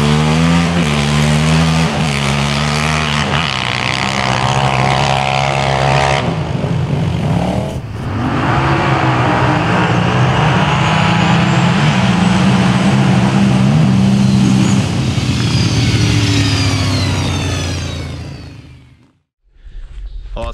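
Sport quad engine through an Empire aftermarket exhaust at full throttle, launching up a sand drag hill and shifting up through the gears, with the pitch stepping down at each shift. A second run of quad engines follows, holding high revs before fading away near the end.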